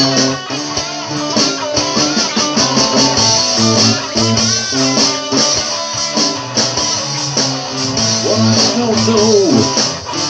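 Electric guitar playing over a steady bass groove in an instrumental passage of a rock song, with string bends near the end.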